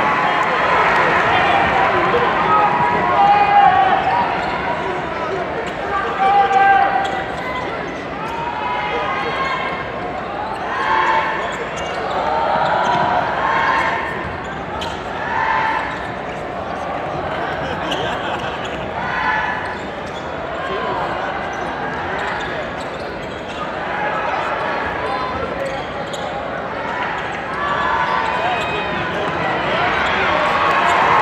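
Basketball game in a large gym: steady crowd chatter, a ball being dribbled on the hardwood court, and many short high sneaker squeaks.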